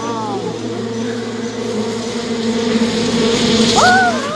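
A swarm of honeybees buzzing in a steady drone, stirred up by smoke rising under their hive. The drone grows a little louder toward the end.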